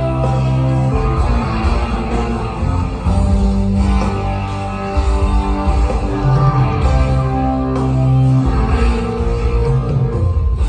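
Live rock band playing an instrumental passage with no singing, electric guitars leading over bass and drums.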